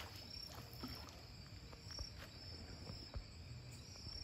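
Faint splashing of a swimmer moving and diving at the surface of a river, with a few small splashes and drips.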